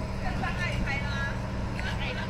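Voices talking in the background over a steady, low machine hum.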